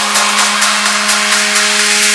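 Drumless breakdown in an electronic dance music DJ mix: one steady held synth note under a loud, bright wash of hiss-like noise, with no beat.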